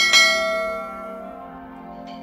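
A bell-ding sound effect for a subscribe animation's notification-bell click: one sudden chime that rings and dies away over about a second, over soft background music.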